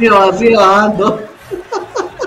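Men talking and chuckling.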